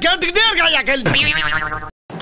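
A voice in exaggerated, sing-song speech. About a second in it turns into a wavering, wobbling tone that rises in pitch, then cuts off suddenly.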